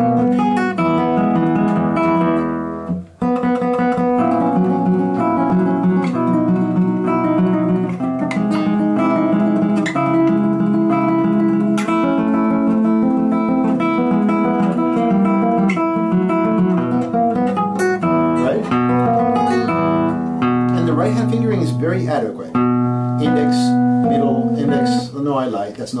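Classical guitar playing a passage of a joropo, with shifts down the neck through fourth, third and second position and a brief break about three seconds in. Near the end a man's voice comes in over the playing.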